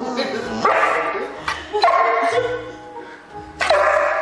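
A puppy barking a few times in short, falling-pitched barks over background music.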